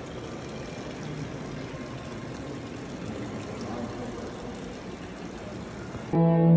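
Steady background hiss of room noise, with no music and no distinct events.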